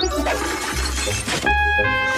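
Cartoon music score with a shattering sound effect as the cartoon cat's figure breaks apart. A sharp hit about a second and a half in is followed by held, chime-like high tones.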